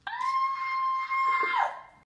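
A woman's long high-pitched scream, rising briefly and then held on one note for about a second and a half before dropping off.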